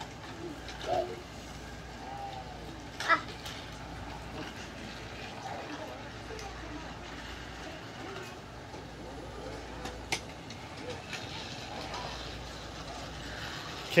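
Plastic toy train pieces clicking sharply as a child handles them, once about three seconds in and again about ten seconds in, with a couple of short child vocal sounds early on over a faint steady background hiss.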